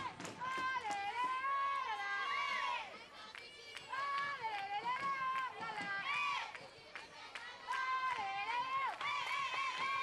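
High-pitched voices singing a cheer together, a melodic chant in phrases of two to three seconds with short breaks between them, as a softball team cheers on its batter.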